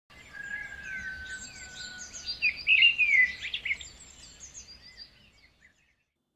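Birdsong: birds chirping and whistling, with one long steady whistle in the first two seconds and the loudest run of quick chirps around the middle, fading out just before the end.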